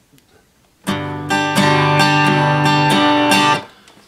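Steel-string acoustic guitar strumming a G major chord: starting about a second in, a rhythmic pattern of about eight down and up strokes, then stopped short about half a second before the end.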